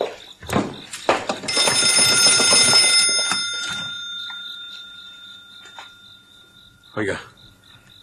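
An old-fashioned telephone bell rings for about two seconds, starting a second and a half in, then its tone dies away slowly over the next few seconds. Crickets chirp steadily throughout, with a few brief voice sounds at the start.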